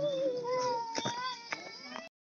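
Long, held, wailing voice calls, one after another, with two sharp knocks about a second in and half a second later.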